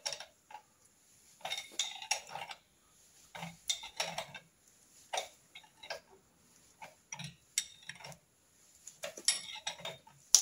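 Ratchet wrench clicking in about six short bursts, a second or two apart, as it turns the forcing screw of a gear puller drawing the camshaft pinion off the camshaft.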